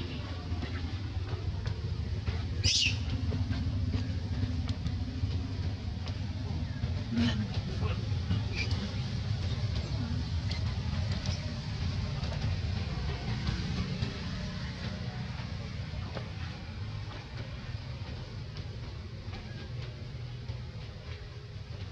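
Steady low rumble of outdoor background noise, with a few short, high squeaks from macaques; the sharpest squeak comes about three seconds in.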